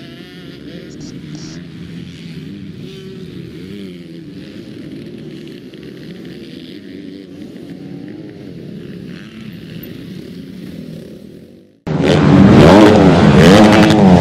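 MX2 motocross bikes running on the track as they pass one after another, their engine pitch rising and falling with the throttle. About 12 seconds in this cuts off and a much louder revving engine sound takes over.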